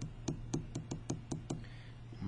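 Quick light knocks of a marker tapped repeatedly against the paper on the desk, about eight taps in a second and a half, over a steady low hum.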